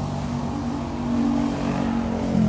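An engine running with a steady low hum that grows a little louder and slightly higher in pitch in the second half.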